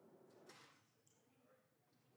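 Near silence: faint room tone, with one brief soft rustle about half a second in.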